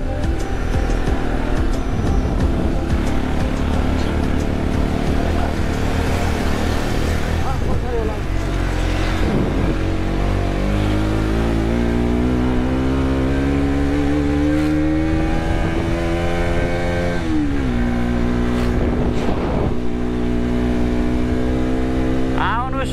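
Motorcycle engine running under load while riding. Its pitch climbs steadily as it accelerates from about halfway, drops suddenly with a gear change, then holds steady.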